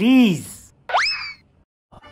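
Cartoon-style comedy sound effects: a pitched sound that bends up and then down, then about a second in a quick rising whistle-like glide, like a slide whistle or boing.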